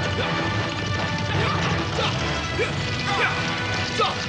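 Movie soundtrack of a chaotic scene: background music under a continuous din of crashing noise, with many short high calls sliding up and down in pitch.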